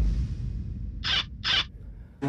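A low thud fading away at the start, then two short hissy swishes about half a second apart.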